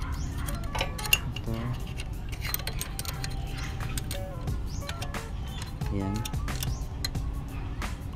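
Background music under light metallic clicks and clinks as a push rod and valve-train parts are handled and seated by hand in a Honda TMX155 cylinder head. One sharper click comes about a second in.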